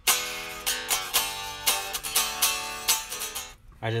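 Fender Road Worn 50s Telecaster electric guitar played with a pick, a quick run of strummed chords and notes up and down the neck, about three strokes a second. It is being played all over the neck to check for fret buzz at a freshly lowered action. The playing stops just before the end.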